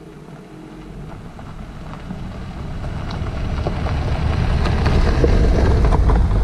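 Jeep Renegade with its 1.0-litre three-cylinder turbo petrol engine driving on a gravel road, engine and tyre noise growing steadily louder as it approaches and passes close by.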